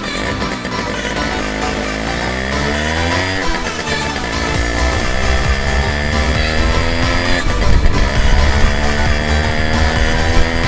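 A Simson moped's two-stroke engine accelerating through the gears: the revs climb, drop at a shift about three and a half seconds in, climb again more slowly, and drop at a second shift about seven and a half seconds in before climbing once more. Background music plays underneath.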